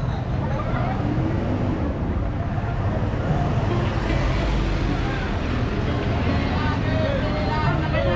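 Busy street ambience: a crowd's overlapping chatter over the steady rumble of road traffic.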